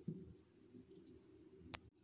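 Near silence: faint room tone, broken by a single sharp click about three-quarters of the way through, followed by a brief dead gap where the recording cuts.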